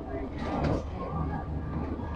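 Low, steady engine hum from a moored river cruise boat, with people's voices around it.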